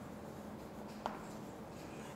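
Chalk writing on a chalkboard, faint scratching strokes with a light tap about a second in.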